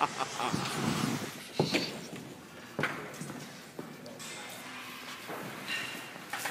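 Faint voices and room noise with a few sharp knocks, about three, spread through the middle of the stretch.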